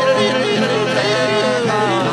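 Men's voices singing a slow, wavering melody together, over a held harmonium drone and acoustic guitar.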